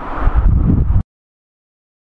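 Wind on the microphone, a low rumbling rush that cuts off abruptly about a second in, leaving dead silence.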